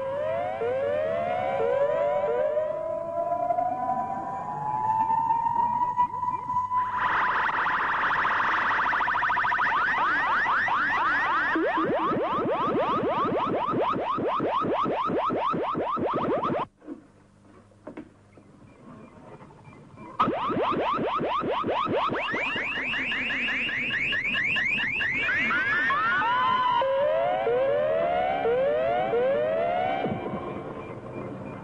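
Synthesized electronic sound effect of a time machine in operation: a rising glide, then rapidly repeating warbling chirps that sweep in pitch. It drops out for about three seconds midway and comes back with a sharp click.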